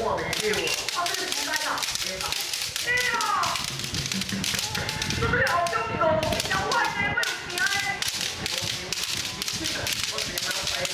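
Many bamboo shinai clacking together in a quick, irregular patter as a group of young kendo students in armour drill, with children's shouts rising and falling over it several times.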